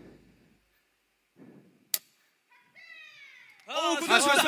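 A short lull in which a song fades away and a single click sounds, then a voice-like sound sliding down in pitch, and loud voices coming in just before the end.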